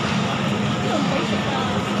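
Busy station platform: a crowd of passengers walking and talking, over a steady low machine hum.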